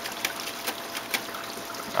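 Water trickling and dripping off a lifted algae-scrubber screen as it drains, with a few short sharp ticks.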